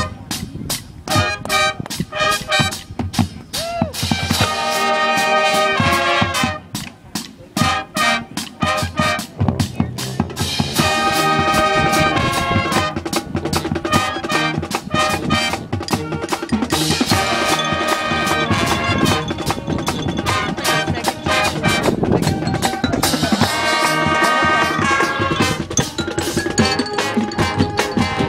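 Marching band playing: brass sections holding loud chords over a drumline with snare and drum kit. About six to ten seconds in, the brass mostly drops out and the drums carry on with gaps before the full band returns.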